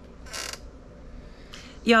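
A chair creaking briefly about half a second in, as someone seated in it shifts.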